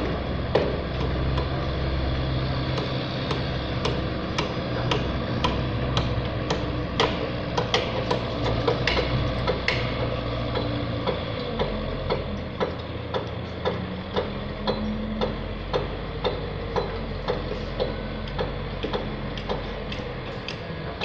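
Diesel engine of a wheel loader running steadily while it pushes sand, over sharp, evenly spaced ticks about two a second.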